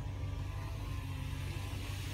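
Steady cabin noise of a car driving slowly: a low engine and tyre rumble with air rushing in through the open side window.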